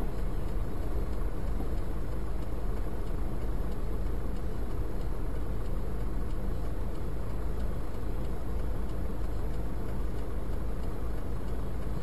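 Steady low rumble of a car idling at a standstill, heard inside the cabin through a dashboard camera's microphone, with an even hiss over it and no distinct events.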